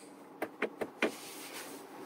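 A car's gear selector being clicked: four light clicks in about half a second, over a steady faint cabin hiss.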